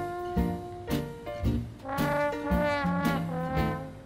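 Trombone playing a swing-jazz melody, its notes rising and falling, over a steady beat of sharp strokes about twice a second.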